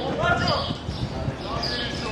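Football players shouting to each other during a practice game, with thuds of the ball being kicked. A call rises and falls early on.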